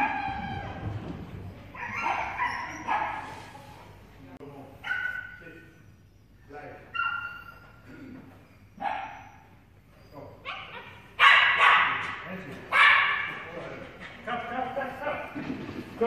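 Small dog barking and yipping again and again in short high-pitched bursts while running an agility course, the two loudest barks coming about two-thirds of the way in.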